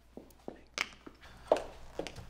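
Footsteps and light handling knocks on a hard floor: a few scattered clicks and taps, the sharpest about one and a half seconds in.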